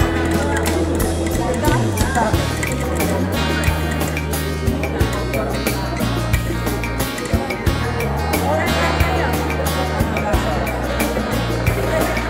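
Background music with a steady bass line. Over it come many irregular sharp pops from popcorn kernels bursting in a covered nonstick pan, denser early on and sparser later.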